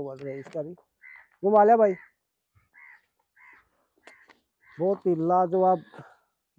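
Men's voices: a short, loud call about a second and a half in, then a burst of talk near the end. Faint, short calls repeat in the background.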